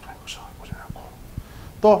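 Chalk scratching faintly on a blackboard as a circle is drawn, with a few light taps, then a man's spoken word near the end.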